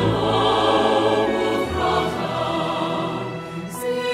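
Mixed SATB choir singing a Hebrew liturgical text with instrumental accompaniment, the voices holding a full chord that softens near the end.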